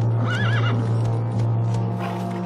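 A horse whinnies once, a short quavering call about a quarter-second in, over low sustained background music.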